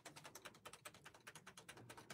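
Near silence with a fast run of faint, even clicks, about a dozen a second.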